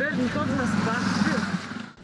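People talking over the steady noise of road traffic, which cuts off just before the end.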